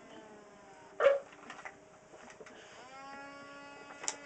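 Animatronic plush toy dog giving off its recorded dog sounds, with one short, loud bark about a second in and a drawn-out whining tone starting near the end.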